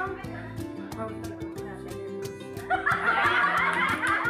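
Music with a steady beat, and a group of people bursting into laughter about three quarters of the way through.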